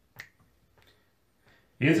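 A pause between sung lines: one sharp click about a fifth of a second in and a couple of faint ticks, then a man's unaccompanied singing voice comes in loudly near the end.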